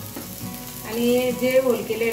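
Spinach thalipeeth frying on a black tawa, a steady sizzle as a little oil is drizzled from a ladle onto the flatbread and into its holes. About a second in, a woman's voice speaks over it, louder than the frying.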